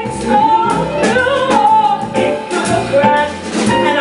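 Live jazz: a woman singing over a small combo of upright bass and drum kit.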